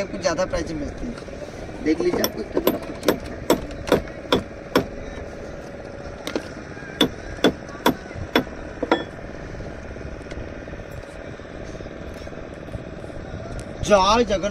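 A metal pipe hammering an oyster shell against a wooden boat deck to crack it open: two runs of sharp knocks, roughly two or three strikes a second, the first starting about two seconds in and the second around six seconds in.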